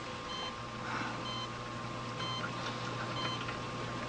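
Faint, short, high electronic beeps repeating steadily about every half second over a low steady hum.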